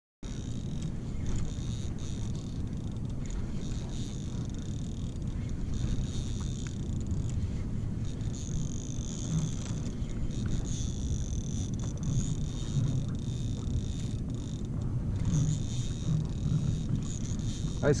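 Steady low rumble of wind on the microphone over open water, with a faint high whine coming and going in stretches as a spinning reel is wound in against a hooked smooth hound shark.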